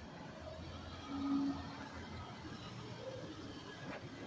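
Faint outdoor street background: a low, steady rumble, with a brief faint tone about a second in.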